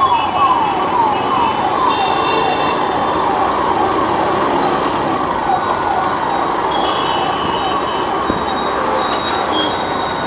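A siren wailing in a repeating falling sweep, about three sweeps a second, fading away over the first six seconds. Underneath is steady city traffic noise, with horns sounding around two and seven seconds in.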